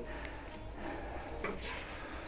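Faint, steady hiss of hot oil as tulumbe dough is pressed from a metal press into the frying pot, with a small soft knock about one and a half seconds in.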